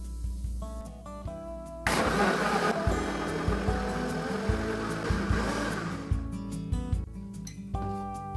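Britânia Diamante countertop blender switched on about two seconds in, blending mango chunks and water into juice; it runs steadily for about four seconds, loudest at the start, then stops.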